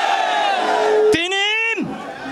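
A crowd of men shouting a protest slogan together in unison. Just past halfway it gives way to a single man's loud call into a microphone, in the call-and-response way of a rally chant.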